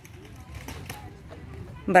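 Low outdoor background noise with a few faint scuffs and knocks, then a short, loud shouted call of encouragement begins right at the end.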